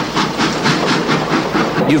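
Cartoon sound effect of a steam locomotive chuffing as it pulls away, an even run of puffs about five a second.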